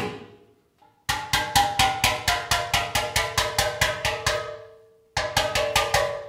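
A steel pan being hammered from the underside in quick runs of strokes, about five a second, each stroke setting the steel ringing with a metallic pitch. The notes are being popped up and given their shape before the pan is heat-treated. There are brief pauses between the runs.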